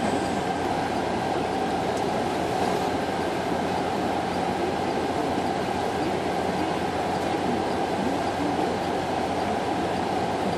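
Diesel power-pack engines of a self-propelled modular transporter running steadily: a constant loud mechanical drone with a faint steady whine above it.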